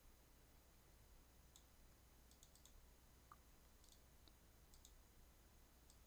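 Near silence: a low steady hum with faint clicks of a computer mouse and keyboard, several in quick succession about two and a half seconds in and a few more scattered after.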